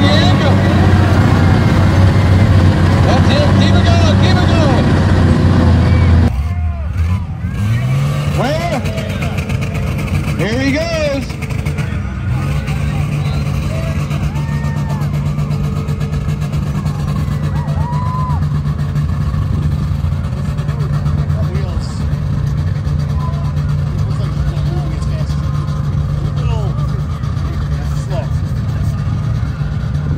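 Dodge M37 military truck's engine running, loud and close as heard inside its cab. After about six seconds the sound drops to a steadier, more distant engine note with crowd voices over it.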